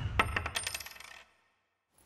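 A small ringing metal object dropped on a hard surface, bouncing and rattling in quickening clicks until it settles and fades out after about a second.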